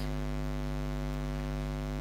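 Steady electrical mains hum: a constant low drone with a buzzy edge of many overtones, unchanging throughout.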